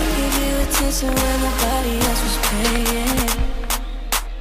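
Music: a song with a beat and a stepping melody line, thinning out briefly near the end.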